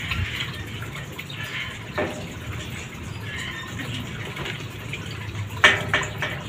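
Steady running and bubbling water from an aquarium's overhead filter and aeration, with two brief sharp sounds, one about two seconds in and a louder one near the end.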